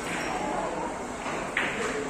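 Carom billiard balls striking: one sharp, ringing click about one and a half seconds in.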